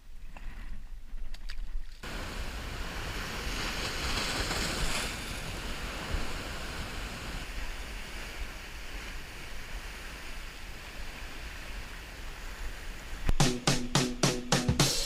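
Sea waves breaking and washing over a rocky shoreline, a steady rushing surf from about two seconds in, with low wind rumble on the microphone. Music starts near the end.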